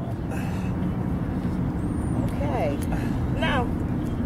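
Steady low rumble of outdoor city background noise, traffic and open-air hum, with a couple of faint brief voice sounds in the second half.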